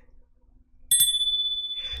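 A single bright bell-like ding, struck about a second in after a short near-silence, ringing steadily for about a second before it is cut off.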